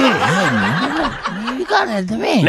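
A person laughing: breathy snickering with a pitch that swoops up and down.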